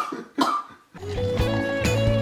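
Two short bursts of a man's laughter, then guitar music starts about a second in with sustained notes over a steady bass.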